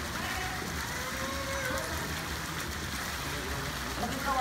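Pool water sloshing and lapping as a person is lowered backward into it, with faint voices behind.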